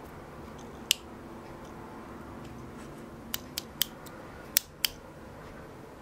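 Sharp little clicks of a plastic-and-metal LED valve-cap light being handled on a bicycle wheel's valve stem: one about a second in, then five in quick succession between about three and five seconds, over a faint steady hum.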